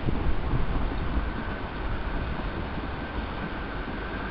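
Low rumble of an approaching passenger train mixed with wind buffeting the microphone, with a faint steady high whine coming in about halfway through.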